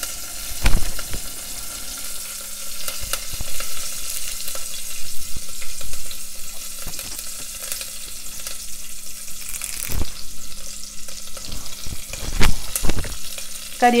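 Curry leaves and spices sizzling and crackling in hot oil in a stainless steel pressure cooker, with a few louder sharp pops, about a second in and again near the end.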